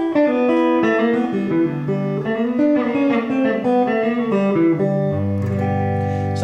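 Electric guitar (Stratocaster-style) played with hybrid picking, pick and fingers together, running a quick country-style turnaround lick of single notes and chord fragments. It settles on a held low note about five seconds in.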